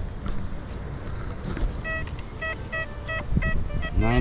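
XP Deus 2 metal detector giving a run of about seven short, high beeps, starting about halfway through, as the coil passes over a buried target. The screen reads a target ID of 92, a high-conductivity signal.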